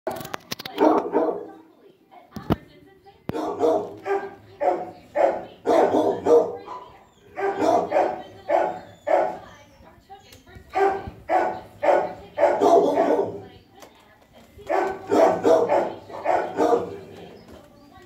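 Dogs barking over and over in a shelter kennel block, in bouts with short pauses, and one sharp click about two and a half seconds in.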